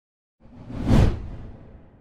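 A whoosh transition sound effect that swells in, peaks about a second in, and trails off.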